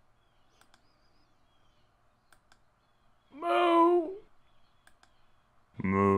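Cow moo sound effects played back from audio files on a computer. A few faint mouse clicks, then a single moo of about a second past the middle, and a shorter, lower moo starting right at the end.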